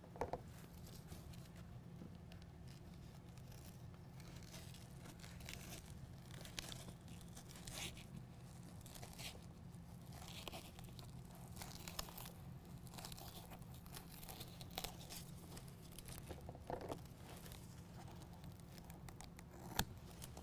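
Faint, scattered rustling and tearing of an adhesive-backed Velcro strip being peeled off its paper backing and pressed on by hand, over a steady low hum.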